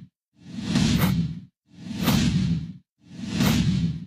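Three whoosh sound effects in a row, about a second apart, each swelling and fading away with silence between them.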